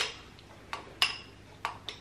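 Metal teaspoons clinking against a glass tumbler as they scoop from it: about five sharp clinks in two seconds, each with a brief bright ring.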